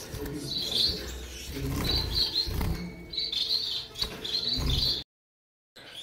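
Small finches chirping in short repeated bursts, with a few low bumps underneath. The sound cuts off abruptly about five seconds in.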